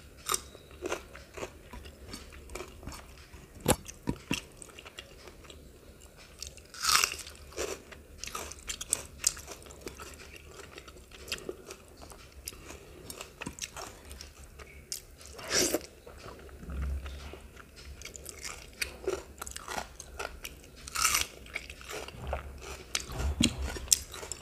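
A person chewing food close to the microphone, with irregular crunches and wet mouth clicks, a few of them louder.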